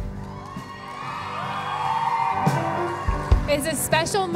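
Soft sustained background music with a congregation cheering and whooping, swelling through the middle. A low thump about three seconds in, and a woman's voice starts just before the end.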